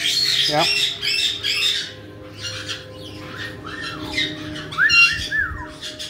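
Caiques squawking: a quick run of sharp, high calls over the first two seconds, then a few arching whistled notes toward the end, the loudest about five seconds in.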